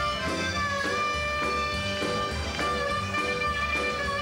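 A blues harmonica, played into a handheld microphone, holding long wailing notes over a live band with a steady drum beat.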